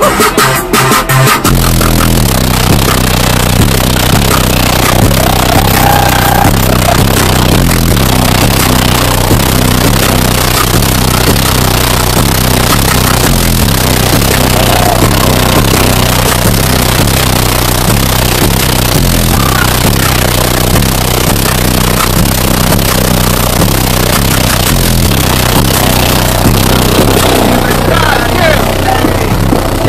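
A very high-powered car-audio system playing bass-heavy electronic music, heard from inside the demo vehicle at near full recording level. The deep bass comes in hard about a second and a half in and stays heavy. The system is loud enough that the windshield in front is already cracked from the bass pressure.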